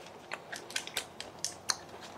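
Faint, irregular small clicks and taps, several each second, with no voices.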